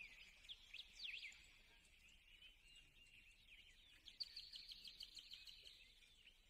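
Faint birds chirping and twittering in the background: many quick high chirps, busiest in a run from about four seconds in, over otherwise near silence.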